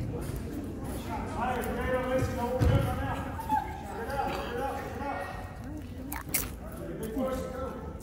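Spectators chattering indistinctly in a gymnasium over a steady background murmur, with one sharp knock about six seconds in.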